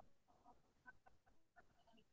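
Near silence on an open call line, with a few faint short sounds scattered through it.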